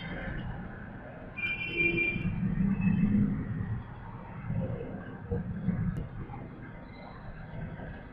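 Low background rumble and hiss. It swells louder for about two seconds starting around a second and a half in, and briefly again in the middle, with a faint high whine over it.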